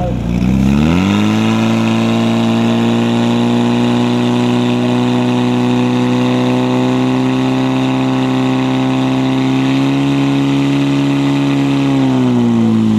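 Portable fire pump's engine revving up sharply in the first second, then held at high revs under load as it drives water out through the hose lines to the jets. Its pitch edges up a little near the end.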